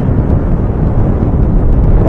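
Wind buffeting the camera microphone as a motorcycle is ridden at about 47 km/h, a loud steady low rumble. The TVS Apache RTR 160's single-cylinder engine runs underneath it.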